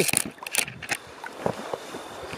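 Water splashing in a shallow stream as a small rainbow trout is landed by hand, with a few sharp splashes over the running water.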